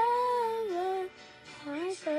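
A single high voice singing a slow melody in long held notes. The line breaks off about a second in, and near the end the voice slides up into the next note.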